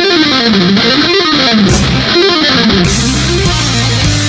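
Distorted electric guitar solo from a V-shaped guitar in heavy metal, played as fast runs that sweep repeatedly up and down in pitch. The rest of the band mostly drops back under it and starts coming back in near the end.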